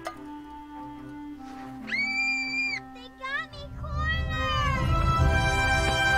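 Film soundtrack: quiet background music with a high, held squeal-like call about two seconds in and several short sliding high calls after it. From about four seconds the music builds with a low drum rumble.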